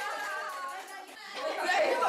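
Indistinct chatter of several voices talking over one another, dipping briefly about a second in and growing louder near the end.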